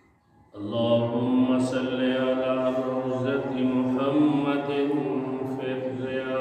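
A man's voice chanting a melodic recitation into a microphone, held in long drawn-out notes. It starts suddenly about half a second in.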